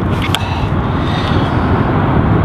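Steady low outdoor rumble of background noise, with a few faint clicks a few tenths of a second in from handling the wet phone.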